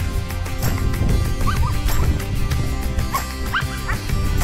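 Background music with a steady beat, over which a leashed dog straining to go forward gives several short, high, rising yips, a pair about one and a half seconds in and a few more near the end.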